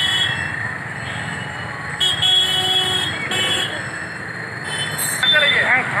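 Busy street noise with people talking, cut by short high-pitched vehicle horn toots around two seconds in and again about three and a half seconds in.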